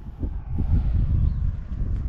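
Wind buffeting the camera microphone outdoors: an uneven low rumble that picks up about half a second in.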